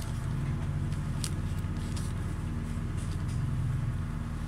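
A steady low mechanical hum with an even buzz, and a few faint clicks over it.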